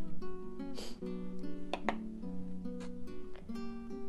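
Background music of a plucked acoustic guitar playing held notes, with a couple of short clicks about one and two seconds in.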